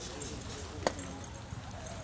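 Murmur of background voices with horse hooves working in the arena dirt, and one sharp knock a little under a second in.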